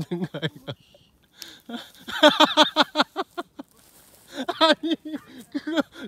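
A person laughing heartily in quick repeated bursts, in three bouts, loudest about two to three seconds in.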